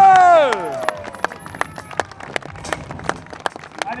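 A long, drawn-out shouted "wow" over the PA at the start, followed by scattered clapping from the crowd.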